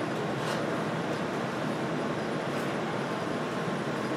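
Steady, even background rush through a shop room, with a few faint soft rustles as a cloth is wrapped around a steel bar.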